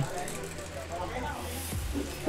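Faint rubbing and handling noise of a knobby mountain-bike tyre being worked onto its rim by hand, with a soft low thump near the end.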